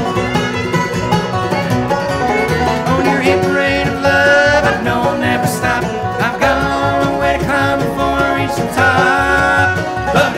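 Bluegrass band playing live, with a resonator banjo picked to the fore over upright bass and acoustic guitar.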